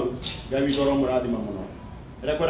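A man speaking in short phrases with a brief pause near the end.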